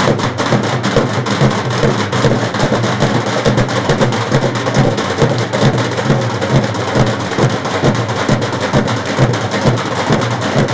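Several dhol drums beaten with sticks, loud, in a fast, dense and unbroken rhythm.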